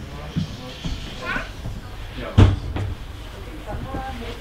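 A railway carriage's door thudding shut once, sharply, about two and a half seconds in, over a murmur of voices.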